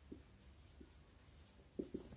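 Faint strokes of a felt-tip marker writing on a whiteboard, with a couple of short soft taps near the end.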